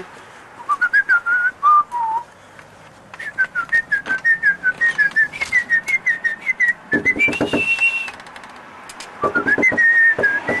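A man whistling a tune in many short, wavering notes. About seven seconds in comes a quick run of knocks on a front door, and another just before the end, with the whistling carrying on over them.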